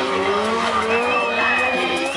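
Stunt sportbike's engine revving with a slowly rising pitch. About a second in, a high, steady tyre squeal joins it as the tyre slides on the asphalt.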